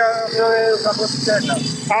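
Speech: a man's voice talking, over a steady outdoor background hiss.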